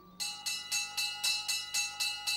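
Fire alarm bell ringing rapidly, about seven strikes a second. It starts a moment in and signals a fire call at the firehouse.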